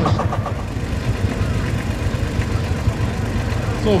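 Vintage tractor engine running at low speed, a steady low pulsing beat.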